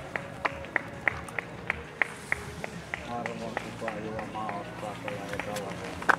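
Sharp, evenly spaced taps, about three a second, over people's voices talking in the background.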